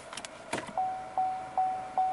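A few short mechanical clicks, then the Buick Envision's rear parking-sensor warning sounding: one steady mid-pitched electronic tone that pulses about two and a half times a second as the SUV is in reverse with cars parked behind.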